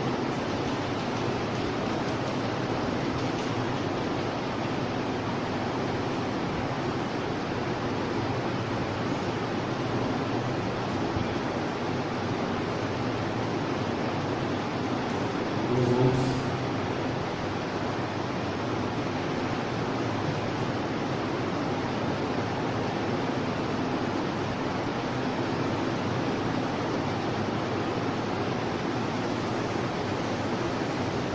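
Steady, even hiss of background recording noise, with a brief low voice sound about sixteen seconds in.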